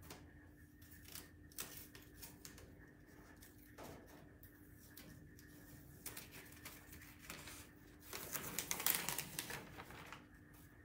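Blue painter's tape and brown masking paper being peeled off a painted metal file cabinet: faint crackling and rustling of paper with ticks of tape coming away, busiest and loudest near the end.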